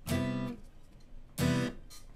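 Acoustic guitar strummed twice: a chord at the start and another about a second and a half in, each muted quickly after it is struck.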